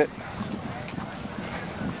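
Soft hoofbeats of a thoroughbred filly walking on a dirt track: faint, irregular thuds with a low outdoor hum.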